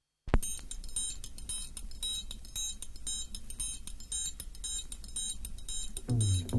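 A vinyl record on a DJ turntable starts suddenly about a third of a second in and plays at low level. It is a sparse beat of regular high ticks over a constant low hum.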